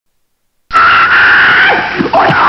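Silence, then a sudden loud, high-pitched squealing sound effect with a steady shrill tone, starting a little under a second in.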